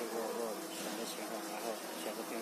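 A steady low hum with hiss, under faint, indistinct background voices.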